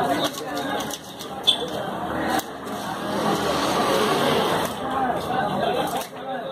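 People talking, overlapping voices of chatter with no clear words, and one brief sharp click about one and a half seconds in.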